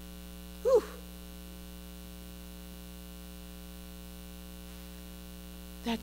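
Steady electrical mains hum in the sound system, a constant low buzz with a stack of even overtones. About a second in, a brief single voice sound rises and falls in pitch; it is the loudest thing here.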